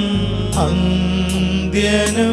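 Devotional adoration hymn sung by a solo voice with vibrato over sustained instrumental accompaniment, with a light percussion stroke about every three quarters of a second.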